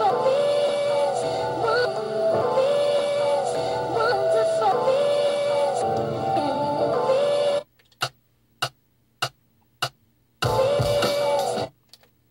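A sampled record with singing played back from an Akai MPC 1000 sampler as a looping phrase; it cuts off abruptly about two-thirds of the way in. Four short chopped stabs of the sample follow, about 0.6 s apart, then a further second-long snippet near the end.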